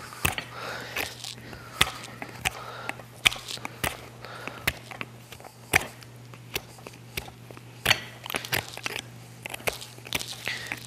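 Hoof knife paring away chalky bar horn on a horse's hoof: a string of short crisp cuts at an irregular pace, roughly one or two a second, over a faint steady hum.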